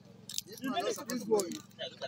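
Light metallic clinking and jingling from small metal objects being handled, with voices in the background and a steady low hum.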